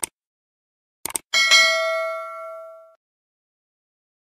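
Sound effect of a subscribe-button animation: a mouse click, two quick clicks about a second in, then a notification bell ding that rings and fades over about a second and a half.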